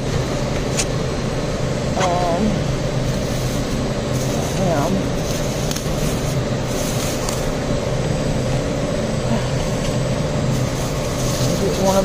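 Steady hum of a warehouse store's refrigeration and air handling, with faint distant voices and the rustle of plastic produce bags and clamshells being handled.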